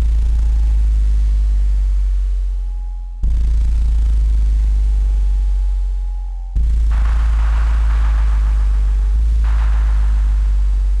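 Live electronic percussion: strikes on a drum each set off a deep, sustained electronic bass tone, starting suddenly about every three seconds and holding before it slowly fades. From about seven seconds in, a grainy, shimmering higher layer joins the bass.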